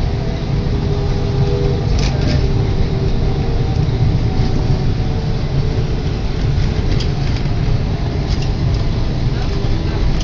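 A moving tram, heard from inside the passenger car: a steady low rumble of the running tram, with a motor whine over the first couple of seconds and a few short clicks or rattles.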